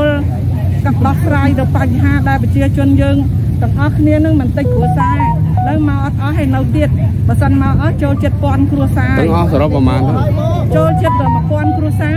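Speech: a voice talking continuously, which the recogniser did not transcribe, over a steady low background rumble.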